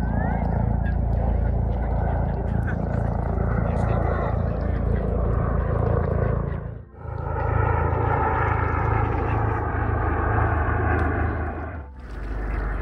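Steady engine drone of a small aircraft flying overhead, with a brief drop-out about seven seconds in.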